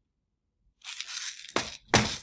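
Plastic jar of lead shot being turned and handled: the pellets shift and rattle inside for about half a second, then two sharp knocks near the end as jars are handled on the benchtop.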